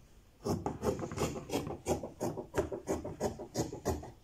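Fabric scissors cutting through blue woven cloth on a wooden table: a quick run of rasping snips, about three or four a second, starting about half a second in.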